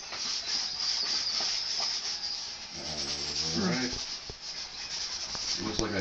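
Yellow chalk rubbing and scraping across paper in continuous drawing strokes. A brief bit of voice comes about three seconds in.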